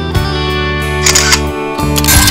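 Background music with guitar, and a camera shutter click sound effect about a second in.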